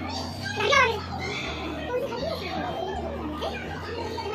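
Young children's voices and play-area chatter, with one loud high-pitched child's squeal about a second in, over a steady low hum.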